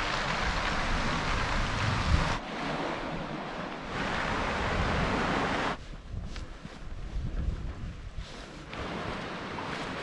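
Sea surf washing against the rocks below the cliffs, mixed with wind rushing over the microphone; the noise drops and changes character abruptly a few times, quieter and more uneven in the second half.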